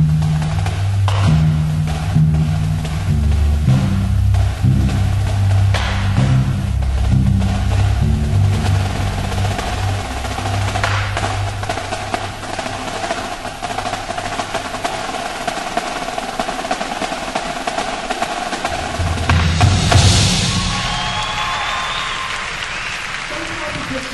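High school indoor percussion ensemble playing: held low bass notes under drum strokes and rolls, then sustained tones that build to a loud swell about 20 seconds in and fade away.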